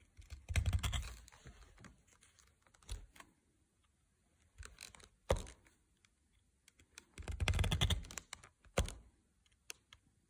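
Stitching awl pushed by hand through thick layered leather, in several short bursts of clicking and scraping with quiet gaps between holes.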